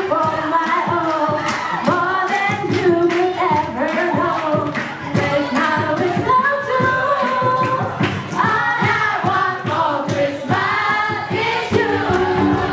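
Several young voices singing a Christmas song together through handheld microphones, over a steadily strummed acoustic guitar.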